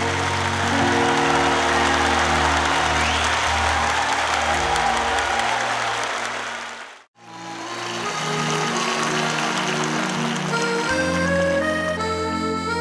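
Audience applause over the band's sustained closing chords. About seven seconds in the sound dips to silence for a moment, then soft sustained instrumental music comes back in, with new melody notes starting near the end.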